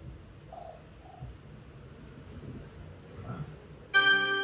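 Faint bird calls from a nature programme on a television: a couple of short calls about half a second and a second in, and another near the end, over a low background hum.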